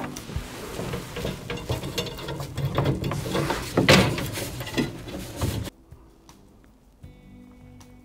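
Clicking and rattling of a metal rod and its hooks as sausages in netting are hung inside a wooden smoking cabinet. The rattle cuts off suddenly about six seconds in.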